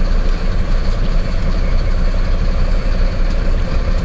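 Mercedes-Benz Atego truck's diesel engine running steadily, heard from inside the cab, where its straight-through exhaust is muted.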